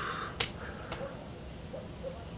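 Two short, sharp clicks about half a second apart, then quiet room tone.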